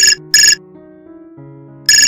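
Telephone ringing in a double ring: two short loud rings, then the next pair of rings beginning near the end, over soft background music.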